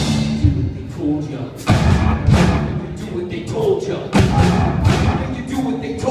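Live rock band with electric guitars, bass and drum kit playing a stop-start passage: the continuous playing breaks off at the start, then sharp full-band hits come with short gaps between them.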